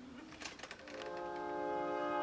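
Opera orchestra after a pause in the singing: a few faint noises, then about a second in the brass enter with a held chord that sustains and swells slightly.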